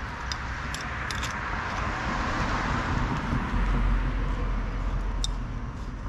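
A car driving past, its engine and tyre noise swelling to a peak with a low rumble in the middle and fading near the end. A few small clicks come through over it.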